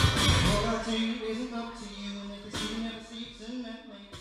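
Live acoustic guitar-and-vocal song coming to its end: the music thins out and fades over a few seconds, a last held note dying away, with one more strum about two and a half seconds in.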